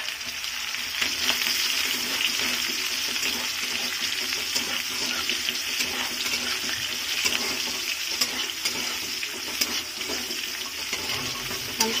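Potato chunks and sliced onions sizzling in hot oil in a steel kadai, stirred with a flat spatula that scrapes and clicks against the pan. The frying hiss grows louder about a second in.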